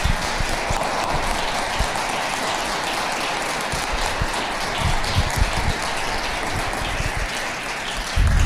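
Audience applauding at the end of a talk; the clapping stops near the end.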